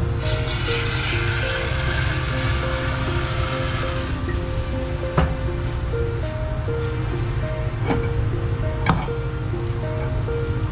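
Background music of slow, sustained notes over a steady low hum, with two sharp knocks, about five and nine seconds in.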